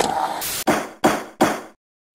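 Three heavy thuds about half a second apart, each sharp at the start and dying away quickly.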